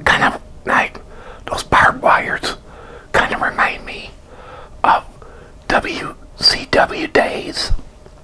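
A man whispering indistinctly, in short bursts with pauses between them.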